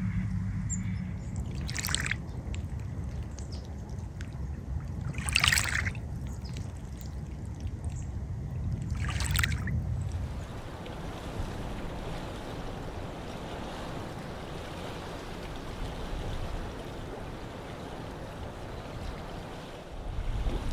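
Small waves lapping and sloshing at the edge of a glacial lake, with three louder splashes about two, five and a half, and nine and a half seconds in, over a low rumble. About ten seconds in the sound drops to a quieter, even hiss.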